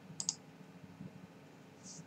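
Two quick, sharp little clicks close together about a quarter-second in, then a short soft hiss near the end, over faint room sound.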